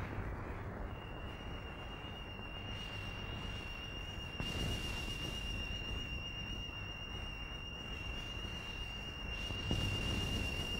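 A single steady high-pitched whistling tone that begins about a second in and holds unbroken at one pitch, over the low hiss and hum of an old film soundtrack.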